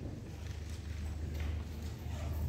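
Chalk being wiped off a blackboard with a hand-held eraser: a series of rubbing strokes over a low steady hum.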